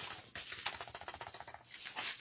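A padded paper mailing envelope shaken by hand: the paper crinkles and the plastic CD cases inside rattle in a quick, dense patter of small clicks.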